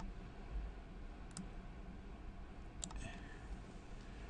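Computer mouse button clicking three times, about a second and a half apart, over a faint low hum.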